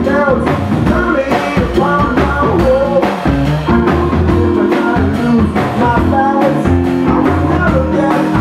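A live rock-and-roll band plays with a semi-hollow electric guitar and drums keeping a steady beat, while a man sings.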